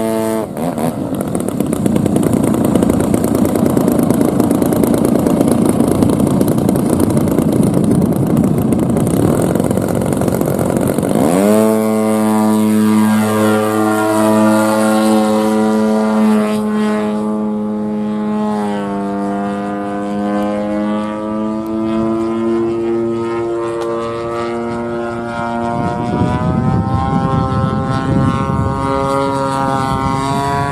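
Radio-controlled aerobatic model airplane's engine and propeller: a steady idle gives way, about half a second in, to a loud full-power run for the takeoff. From about 11 seconds it settles into a clear, steady engine note whose pitch shifts as the plane flies, then opens up again near the end.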